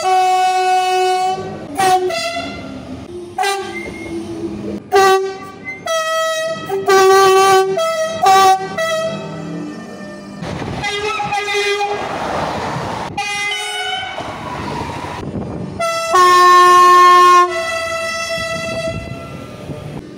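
Electric RER train horn sounding again and again: about a dozen short toots, some dropping between two pitches. In the middle comes several seconds of rushing train noise, and near the end a longer, louder blast.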